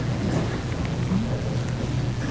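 Congregation settling into wooden pews: a steady, rumbling wash of rustling and shuffling.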